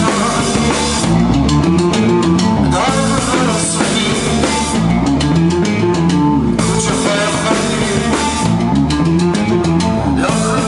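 Live rock band playing a song: bass guitar, guitar and drum kit together at a steady, full level.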